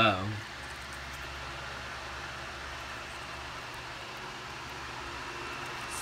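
Electric room fan running steadily at high speed, an even whirring noise with a faint low hum.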